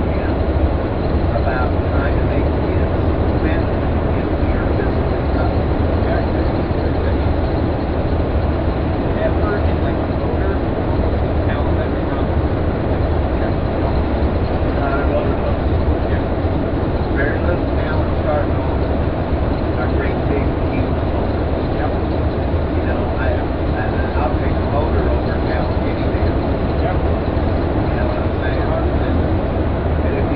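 Steady road and engine noise inside a motor coach cruising at highway speed: a constant low rumble with tyre and wind hiss over it.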